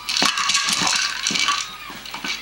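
A puppy pawing at and biting a hard toy on a carpet: a quick, irregular run of clattering knocks and crackling.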